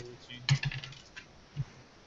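A few light clicks and clatters of small hard objects handled at a table, bunched about half a second in, with two or three more spaced out afterwards.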